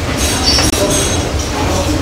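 Laboratory fume extraction running with a steady low hum, with a brief high squeak and light glassware sounds as a digested sample tube is handled at the digestion block.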